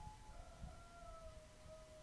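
Near silence: faint room tone with a thin, steady high tone that sags slightly in pitch.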